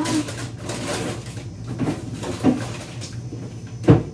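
Hard-shell suitcase being handled on a tile floor: scattered rustles and knocks of the shell, with one sharp knock near the end, the loudest sound.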